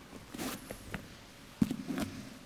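Books handled on a wooden lectern close to a microphone: paper rustling and small knocks, then a thump about one and a half seconds in as a book is set down, followed by more rustling.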